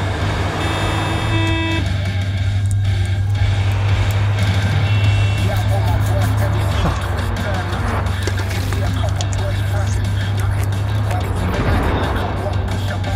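Road traffic and a steady low rumble under background music, with a car horn sounding for about a second near the start.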